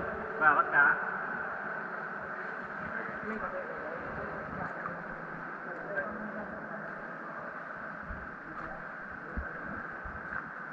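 Steady rushing of water from an underground cave river. A man's voice chants briefly in the first second.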